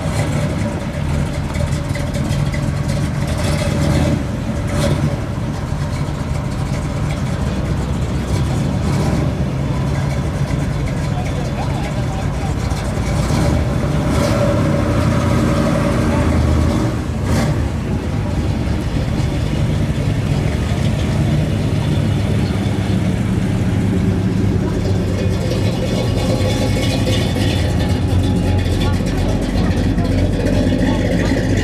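Classic Chevrolet Caprice engine idling steadily as the car creeps past at walking pace, a low, even rumble.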